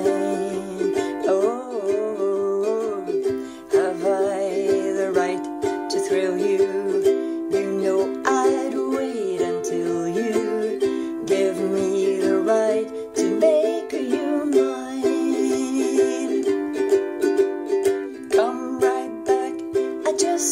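Solo ukulele strummed in a steady rhythm, playing a run of chords without singing.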